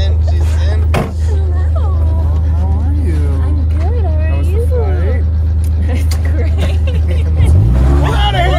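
Side-by-side utility vehicle's engine running as it drives, a steady low drone, with a click about a second in and the engine pitch rising near the end.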